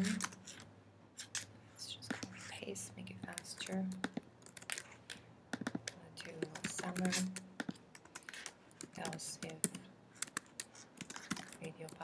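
Computer keyboard typing, with keystrokes coming in quick, uneven runs.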